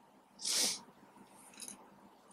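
A short, sharp burst of breath through the nose or mouth, loud and hissing, about half a second in, followed near the end by a faint light click as the plastic French curve comes off the drawing sheet.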